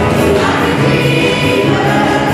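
Congregational worship song performed live: lead singers and a choir singing together with a band of piano, drums and guitars, at a steady loud level.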